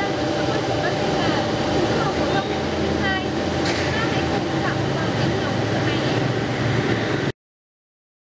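A woman talking over a steady rumble of road traffic. The sound cuts out suddenly a little after seven seconds in.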